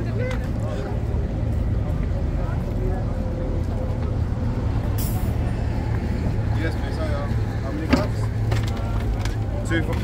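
Steady low rumble of road traffic, with passers-by talking and a short hiss about five seconds in.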